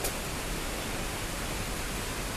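Steady, even hiss of heavy rain, heard from inside a station concourse.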